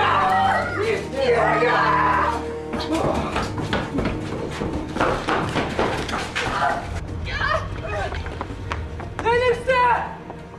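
Raised, shouting voices and a scuffle with short knocks and thuds, over background music with steady held low tones; near the end comes a loud cry that rises and falls in pitch.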